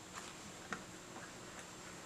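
A few faint, light ticks, about two a second, over quiet room tone.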